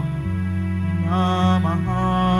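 Church communion hymn: a voice singing with vibrato over sustained accompanying chords. The voice drops out briefly between phrases at the start, leaving the held chords, and comes back in about halfway through.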